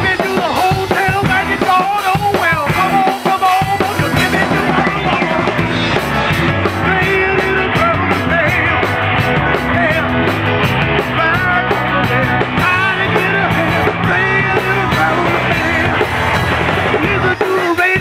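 A rock song played live by a band: drum kit with cymbals, electric bass guitar and a male lead singer.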